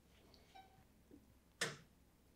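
Faint short electronic beep from the Matrix ClimbMill stair climber's console about half a second in, as the machine is started. A brief sharp noise follows near the end.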